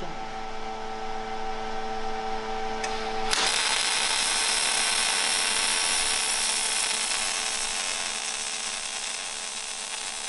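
ESAB EM 210 MIG welder's cooling fan running with a steady hum, then about three seconds in the MIG arc strikes and burns with a steady hiss as a bead is laid with bare solid wire at 18.5 volts and 280 inches per minute wire feed. The inductance is turned up to nine to cut down the spatter of the previous weld.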